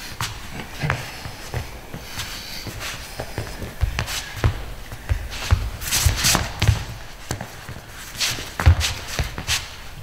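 Footsteps and shuffling of athletic shoes on a sports hall floor: an irregular run of quick steps and low thumps as two people step in and out against each other.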